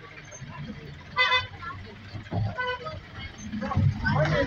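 Vehicle horn sounding two short toots about a second and a half apart, the first louder, each on one steady pitch.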